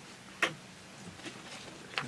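Quiet room tone with one sharp click about half a second in and a faint tick near the end.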